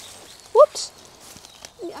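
Leeks being pulled by hand out of garden soil, with a brief rustle of roots and soil tearing loose. A short, sharp rising squeak about half a second in is the loudest sound.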